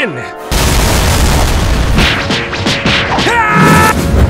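A sudden loud cartoon impact boom about half a second in, as a punch lands in an animated fight, rumbling on under dramatic music. Near the end a voice shouts with a rising, then held, pitch.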